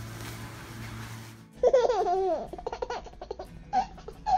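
A steady low hum with faint rustling stops abruptly about a second and a half in. It is followed by bursts of high-pitched, baby-like laughter with falling pitch, one long peal and then shorter giggles near the end.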